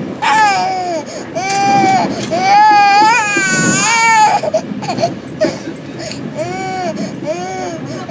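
A toddler crying hard in repeated high wails, each one rising and falling in pitch. The wails are long and loud for the first four seconds, then come shorter and softer after a brief pause.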